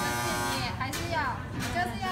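A steady electric buzz that stops about half a second in, followed by people talking.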